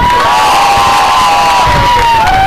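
Several people yelling together at soccer match spectators' volume, a few voices holding one long loud shout that lasts about two seconds.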